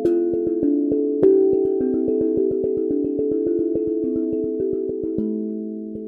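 Handmade 12-tongue steel tongue drum tuned to a Phrygian hexatonic scale, struck with two mallets in a quick run of about five notes a second. The ringing notes overlap, with a harder stroke about a second in, and the playing grows a little quieter toward the end.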